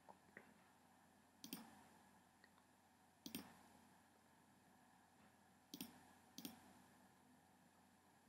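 About five or six faint, sharp computer pointer-button clicks, spread out with pauses between them, as tabs of a web page are clicked through. Near silence in between.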